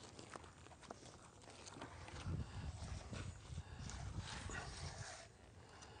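Faint footsteps and rustling through forest undergrowth, with a few light clicks and knocks, as a man steps around the base of a tree trunk while handling a diameter tape.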